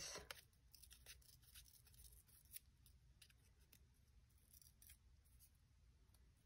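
Near silence with faint, scattered crackles and ticks of a small strip of paper being worked between the fingers.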